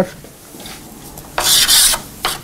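Chalk scratching on a blackboard: quiet at first, then about a second and a half in, one loud half-second scrape as a long curly brace is drawn.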